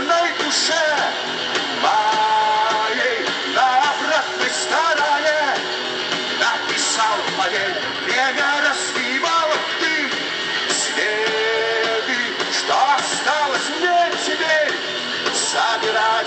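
A live rock band playing through a concert PA, with electric guitars, bass and drums under a singer's voice.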